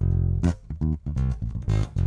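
Fazley Mammoth seven-string electric bass played with plucked fingers: a quick phrase of about eight notes, the first and last ringing longest.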